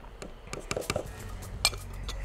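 A spoon clinking against a glass bowl and a glass Pyrex jug as cornstarch is scooped and tipped in: several light clinks, the sharpest near the end.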